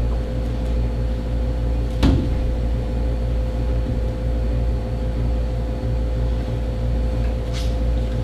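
Steady low hum of a window air conditioner running, with a faint constant whine over it. A single sharp click about two seconds in.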